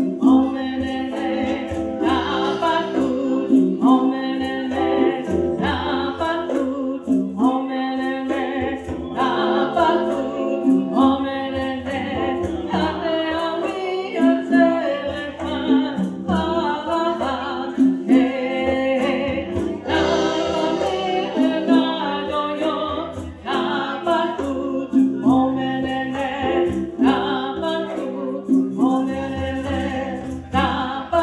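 A woman singing a chant in short repeated phrases, over a steady hand-drum beat of about two strokes a second and sustained keyboard chords.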